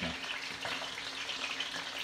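Chicken drumsticks frying on high heat in a frying pan, a steady sizzle.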